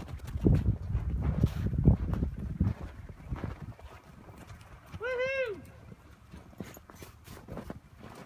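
Hooves of several blanketed horses running through snow: a run of low thuds over the first few seconds. A person calls out once, about five seconds in.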